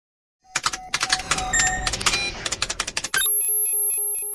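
Electronic logo sting for a news intro: about half a second in, a rapid flurry of clicks and short synthetic blips starts. About three seconds in, it settles into a held electronic chord with a high tone pulsing on top.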